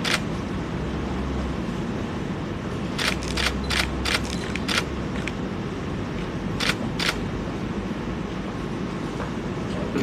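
Steady hall background noise with a quick run of about six sharp clicks near the middle, then two more about a second and a half later: camera shutters firing.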